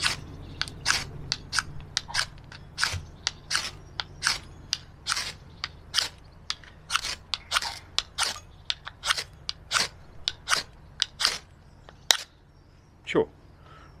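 Ferro rod scraped with the blade spine of a Fiskars utility knife: rapid, repeated rasping strokes at about three a second, throwing sparks. The strokes stop about twelve seconds in. The knife does strike sparks, though not as well as a dedicated striker.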